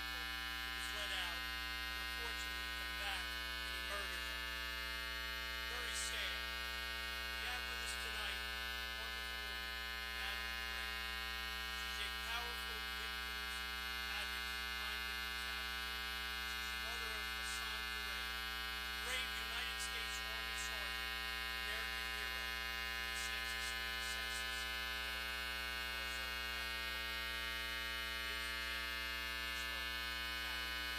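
Steady electrical mains hum with many overtones, filling the audio feed: a fault in the livestream's sound. A faint voice is just audible underneath it.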